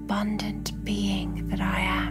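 A voice whispering over slow ambient new-age music with steady held low tones; the whispering stops at the very end.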